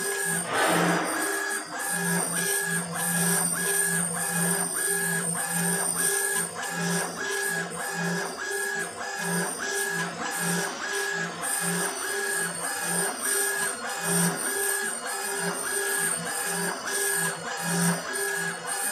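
Laser engraving machine's head raster-scanning back and forth, its drive motors giving a short whine on each pass in a regular rhythm of about three passes a second.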